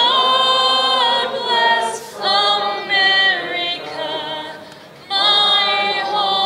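Unaccompanied singing: a high voice holding long notes with vibrato, in phrases broken by short pauses about two seconds in and again near the end.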